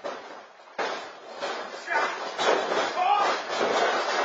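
Wrestlers' bodies and feet thudding on a wrestling ring's canvas several times, mixed with indistinct voices calling out.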